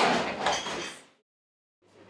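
Restaurant din of dishes and cutlery, fading out within about a second into a short stretch of dead silence, then faint room tone.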